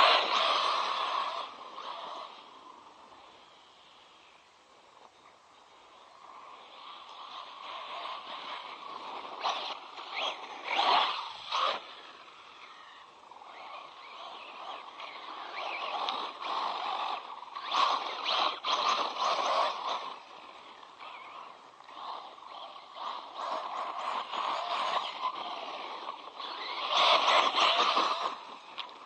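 ZD Racing Pirates 2 MT8 RC monster truck's brushless electric motor and drivetrain whining as it drives, swelling and fading repeatedly as the throttle comes on and off. It is loudest at the very start and again near the end.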